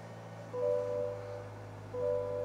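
A car's electronic chime sounding twice, a pair of clear tones about a second and a half apart, from the 2023 Buick Envision Avenir as it is being started. Under it runs a low steady hum.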